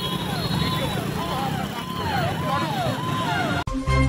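An emergency vehicle siren going up and down in pitch about every two-thirds of a second, over a dense rumble of traffic and crowd noise. Near the end it cuts off suddenly and a news music sting begins.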